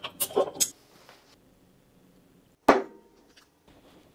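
A bottle opener prying the crown cap off a glass beer bottle: a quick cluster of metallic clicks and a brief hiss in the first moment. A single sharp clink with a short ring follows about two and a half seconds later.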